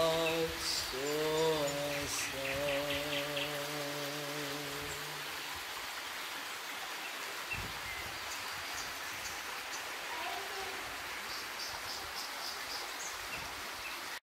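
A voice holds a long final note that ends about five seconds in. A shallow stream keeps rippling over stones throughout, with short bird chirps a couple of seconds in and again near the end.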